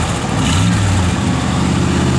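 A 350 cubic-inch V8 with dual exhaust idling, heard at the rear tailpipe as a steady low exhaust note.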